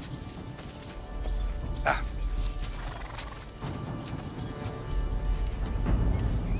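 Horses moving over forest leaf litter, with one short horse call about two seconds in, over background music of low sustained tones.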